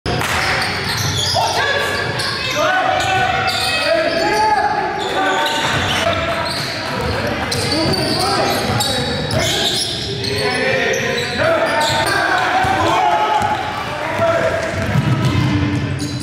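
Basketball game in a gymnasium: the ball bouncing on the hardwood court, mixed with players' voices calling out, all echoing in the large hall.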